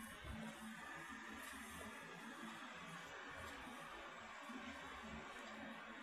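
10-inch three-blade Midea mini ceiling fan running at its slowest speed setting: a faint, steady whir with a low motor hum.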